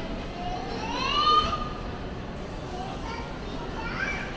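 Shopping-mall ambience of indistinct voices, with a child's loud call rising in pitch about a second in, the loudest sound.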